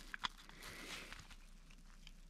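Faint handling noise with a few small clicks as AAA batteries are pulled out of a plastic camping lantern's battery compartment.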